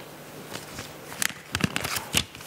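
Paper ballot slip being taken from the ballot box and unfolded: a run of sharp paper crackles and rustles, thicker and louder in the second half, with a couple of dull knocks.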